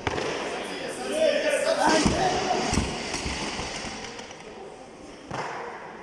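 A barbell loaded with about 200 kg of Eleiko bumper plates dropped from overhead onto a lifting platform: heavy thuds about two seconds in as the plates land and bounce.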